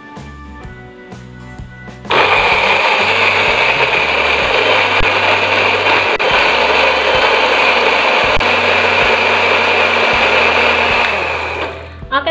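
Electric countertop blender with a small grinding jar switching on abruptly about two seconds in and running steadily, grinding a wet spice paste of chillies, shallots, garlic and aromatics with a little water, then winding down near the end.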